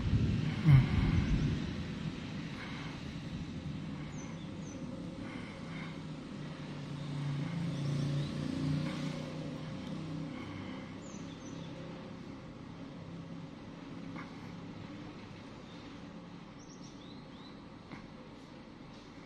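Low background hum of traffic that swells around eight seconds, with a sharp knock just under a second in. A few short, faint, high chirps of a small bird come about four seconds in, around eleven seconds and near the end.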